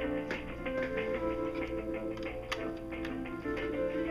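Music on hold playing from an IP phone on a VoIP call, running on without a break: the call has stayed connected through the router's failover to the second internet line.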